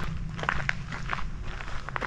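Footsteps crunching on a gravel trail, a few uneven steps.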